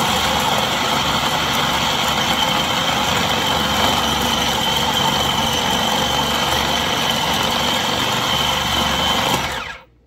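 Food processor motor running steadily with a faint whine, blending a spinach and egg mixture into a puree; it cuts off suddenly near the end.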